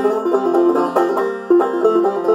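Long-neck open-back banjo played clawhammer style in G tuning pitched down two frets to F, a run of quick plucked notes with one bright note coming back again and again, with no singing.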